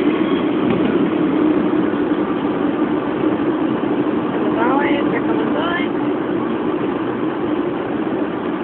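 Steady engine and road noise of a moving vehicle heard from inside, with two short rising sounds in the middle.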